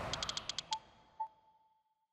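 Logo sound effect: a swelling whoosh that fades, a quick run of about seven clicks, then two soft pings on one pitch whose tone rings on and trails away.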